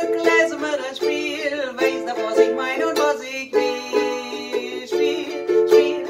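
A woman singing a Yiddish song with vibrato, accompanying herself on a strummed ukulele.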